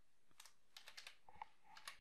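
Faint clicks of computer keys being pressed, several short taps spread through the second half.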